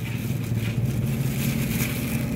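A steady low motor hum with background noise.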